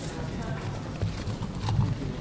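Indistinct talking among a small group of people close to an open microphone, with footsteps and shuffling as they move away.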